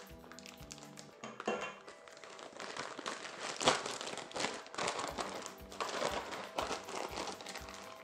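Disposable plastic piping bag crinkling and rustling as it is handled and filled, busier and louder from about three seconds in, over soft background music.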